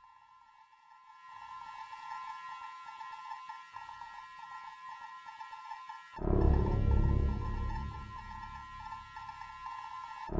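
Suspenseful film score: a held, droning chord of high sustained tones, then about six seconds in a loud, deep swell comes in sharply and carries on.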